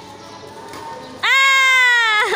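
A loud, high-pitched, drawn-out vocal call starts suddenly a little past halfway. It rises at the outset, then holds and slowly sinks in pitch.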